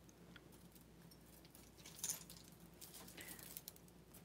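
Faint clinks and jingles of a pile of costume jewelry, metal chains and beads, being picked through by hand, a little louder about halfway through.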